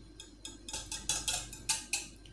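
Wire whisk beating eggs with oil and water in a glass bowl: a quick, uneven run of clicks and taps as the wires strike the glass, starting about half a second in.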